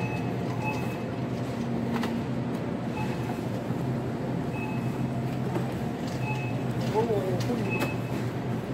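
Supermarket background noise: a shopping cart rolling over a tiled floor and the steady hum of refrigerated display cases, with a few short high beeps and faint voices in the background.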